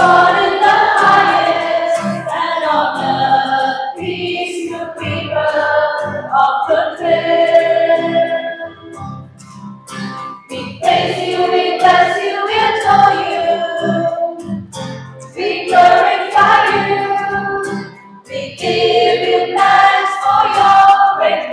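A small church choir, women's voices leading and sung into microphones, singing a Mass chant or hymn in phrases with short breaks between them, over a light instrumental accompaniment.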